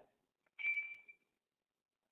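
A single faint, short high-pitched electronic ping about half a second in, fading away within half a second.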